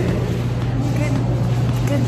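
Steady low machine hum, with faint voices in the background.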